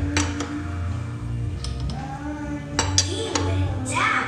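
Sharp metallic clicks and clinks of a hand wrench working on the cylinder head of a Yamaha Soul GT 125 scooter engine as it is tightened down, a few separate clicks, over steady background music.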